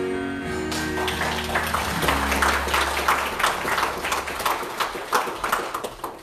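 A gospel song ends on a held final chord. About a second in, the church congregation starts clapping and applauds until near the end.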